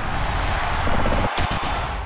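Music and sound effects of an animated logo sting: a sustained noisy sweep, a few sharp hits about one and a half seconds in, then fading out.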